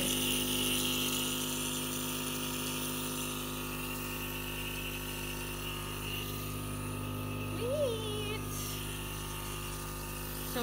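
Compressor nebulizer just switched on, running with a steady motor hum. A short rising-then-falling vocal sound comes about eight seconds in.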